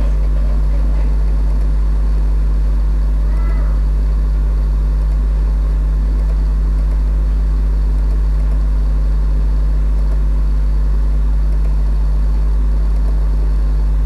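A loud, steady low hum that does not change.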